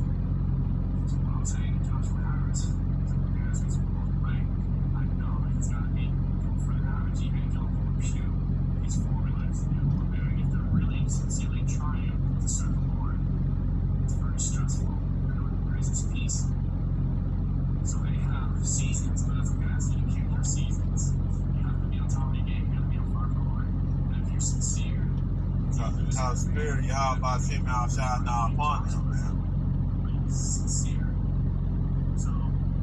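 A steady low hum runs throughout, with scattered faint speech fragments and clicks over it. From about 26 to 29 seconds in comes a quick run of short rising chirps.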